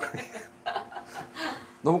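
A man chuckling quietly in a few short breathy bursts, with speech starting near the end.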